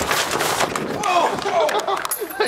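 Quick footsteps of a person running on a hard pavement, a rapid run of sharp slaps, then a person's voice coming in about a second in.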